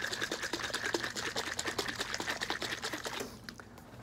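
Corn syrup and water sloshing inside a capped clear bottle shaken hard by hand to mix them, a rapid even rhythm of sloshes that stops about three seconds in.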